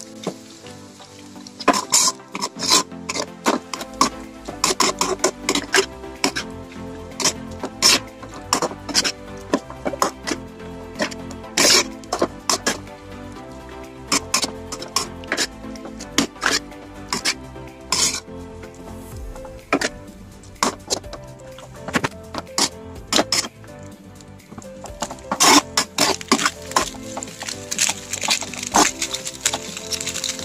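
Background music, with a metal spatula knocking and scraping irregularly against a wok as noodles are stir-fried.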